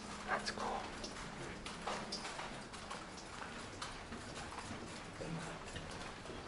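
Footsteps of people walking along a hallway: irregular sharp taps of shoes, several a second, with a faint steady low hum for the first two seconds.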